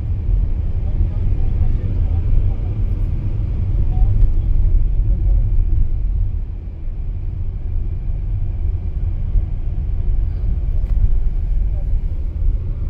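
Cabin noise of a Fiat Egea Cross 1.6 Multijet diesel on the move: a steady low rumble of engine and road noise heard from inside the car.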